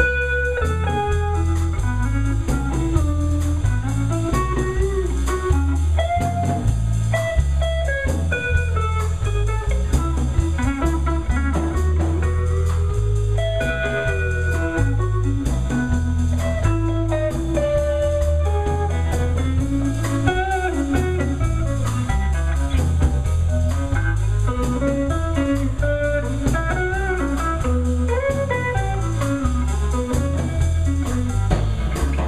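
Live blues band playing an instrumental break: an electric guitar solo with bent, sliding notes over a steady bass and drum groove.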